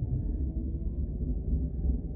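Car cabin rumble from the engine and tyres while driving slowly, with a faint engine note rising gently as the car picks up speed.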